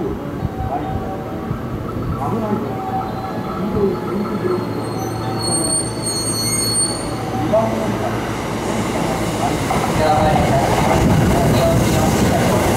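A JR West commuter electric train approaching and running in alongside the platform, its rumble growing louder as it comes close. A brief high squeal is heard about halfway through.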